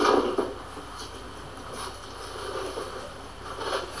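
Brief scraping and rustling of cardboard as a small trailer tire on its wheel is pulled out of its box, loudest at the very start, then faint handling sounds.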